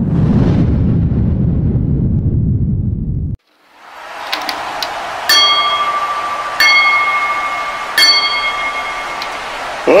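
A loud, low rumble for about the first three seconds, cutting off suddenly. A wrestling ring bell is then struck three times, each strike ringing on, about 1.3 seconds apart, over steady crowd noise, the bell that signals the start of a match.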